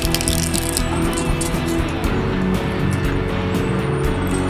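Background music over a twin-shaft shredder's cutter discs grinding a plastic fashion doll, with a run of sharp cracking clicks as the plastic breaks.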